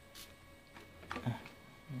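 Plastic clicks and knocks of a mains plug being pushed into a power strip socket, with a sharp click near the start and a small cluster of clicks about a second in.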